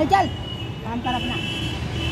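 Short snatches of voices over the steady low rumble of street traffic, with a thin high steady tone in the second half.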